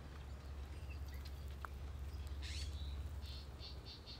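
California scrub jay calling: one harsh high burst about halfway through, then a quick run of short calls near the end, over a steady low rumble.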